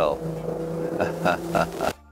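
A man's hesitant speech and laughter over a steady low hum, which cuts off just before the end.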